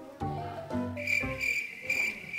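Background music with low, stepping notes. About a second in, a steady, high chirping trill of crickets joins it: a comic 'awkward silence' cricket sound effect laid over the pause before the interview starts.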